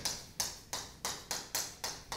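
Chalk writing on a blackboard: a quick run of sharp taps and scratches, about three a second, as each letter stroke is made.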